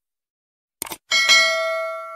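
Subscribe-button animation sound effects: a quick double mouse click just under a second in, then a bright bell ding that rings on, slowly fading.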